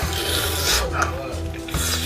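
Mouth sucking and slurping marrow out of a cooked bone, with a loud, noisy suck through most of the first second.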